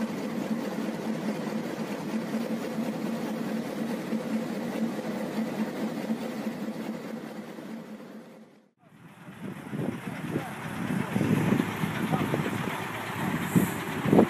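A heavy tracked machine's diesel engine running with a steady hum, cut off abruptly about eight and a half seconds in. After the cut comes a rougher, uneven engine sound.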